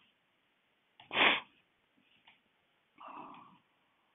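A person's sudden loud vocal burst about a second in, short and sharp, then a shorter, softer vocal sound about three seconds in. Faint clicks of typing on a keyboard come between them.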